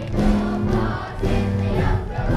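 A song from a stage musical: a small live band with keyboard and electric guitar accompanies a children's chorus singing together, in loud held notes.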